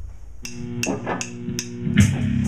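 Rock band starting up: four sharp, evenly spaced ticks about 0.4 s apart over low ringing guitar notes. Right at the end the full band comes in with a loud hit of drums and distorted guitar.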